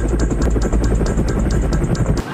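Helicopter rotor sound effect: a fast, even chopping over a deep, steady drone, dubbed onto a crab swimming so that it seems to have a propeller.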